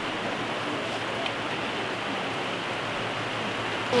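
Steady rush of a rocky mountain river running over rapids.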